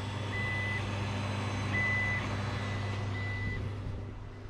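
Three evenly spaced electronic beeps, each about half a second long and on one high pitch, about a second and a half apart, over a steady low mechanical hum.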